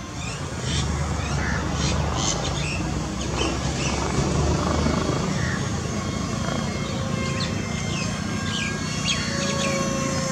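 Small birds chirping and calling in short, scattered notes over a steady low rumble.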